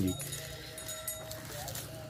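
Faint bleating of a farm animal in the background: a thin, drawn-out call lasting about a second, then a short rising call near the end.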